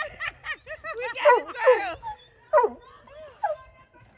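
Women laughing: several bursts of laughter with short pauses between.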